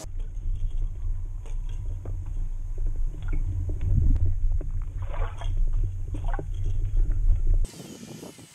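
Underwater recording: a heavy low rumble of water against the microphone, with scattered clicks and knocks from a Suick Thriller jerkbait and its metal tail as it is jerked through the water. It cuts back to open air just before the end.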